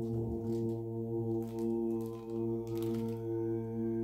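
A steady low drone holding one pitch, rich in overtones, with a few faint soft knocks.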